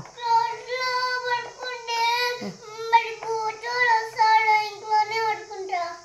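A young child singing in a high voice, a wordless tune of long, drawn-out notes with short breaks.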